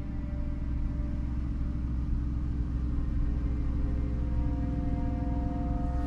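Horror film score: a low, rumbling drone with held tones above it, slowly growing louder.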